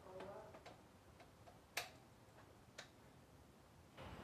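Near silence broken by about eight faint, sharp clicks at uneven intervals, the loudest just under two seconds in.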